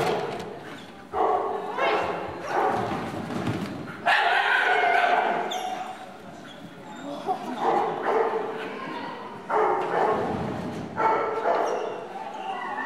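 A Groenendael (Belgian Shepherd) barking repeatedly during an agility run, mixed with a person's shouted commands.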